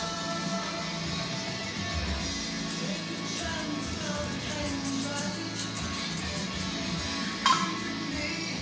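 Background rock music with guitar at a steady level, with one short, louder sound near the end.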